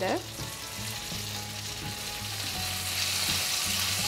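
Cherry tomatoes sizzling in hot olive oil, added to sautéed onion, garlic and chillies in a pan; the sizzle grows louder over the few seconds.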